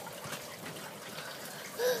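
Water trickling steadily into an aquaponics fish tank, with the system's circulating flow running.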